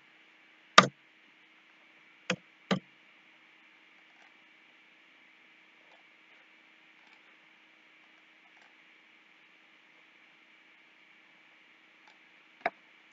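Three sharp clicks of computer keys being pressed: a loud one about a second in, then two close together about two and a half seconds in. After them a faint steady hum and hiss.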